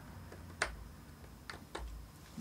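Scribing tool ticking as its point is dragged around the edge of a mother-of-pearl inlay on a fingerboard, scoring the outline into the wood: a few sharp ticks, the loudest about half a second in.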